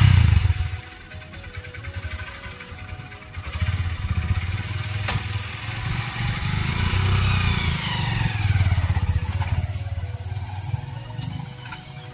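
Motorcycle engine running, a Honda dirt bike. It gets louder about three and a half seconds in as the bike is revved and ridden off, and eases near the end. A single sharp click comes about five seconds in.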